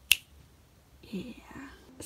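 A single sharp click, then about a second later a brief, faint murmur of a voice.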